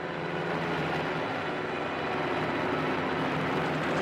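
Bell UH-1 'Huey' helicopter in flight: a steady drone of turbine and rotor that grows slightly louder.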